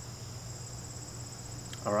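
A steady, high-pitched insect chorus, with a low steady hum underneath.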